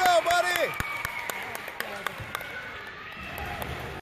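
A spectator shouting during the first second. Then scattered sharp knocks from the ball and the players' footsteps on the gym floor, over faint crowd noise.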